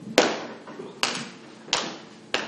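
Three sharp knocks on a theatre stage, spaced under a second apart, each with a short echo in the hall; the first is the loudest.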